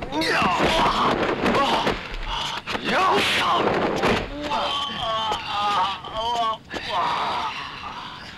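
Kung fu fight: fighters' shouts and pained grunts mixed with sharp dubbed punch and kick impacts. A run of wavering groans comes about five to six and a half seconds in.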